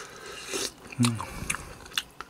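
A person chewing a mouthful of galbitang beef, with a few sharp short clicks.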